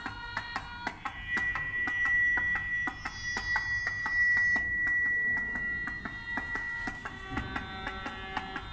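Electronic sounds synthesized in SuperCollider and driven by body-worn sensors as the arms move: a rapid scatter of short plucked, pitched notes and clicks, with a steady high tone held from about one second in to about seven seconds in.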